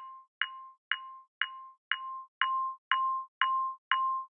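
A glockenspiel note struck over and over, about two strikes a second, played through a band-pass EQ filter that leaves only the band holding the hammer-strike sound. Each strike is a short, knocking tone, thin without its lower frequencies.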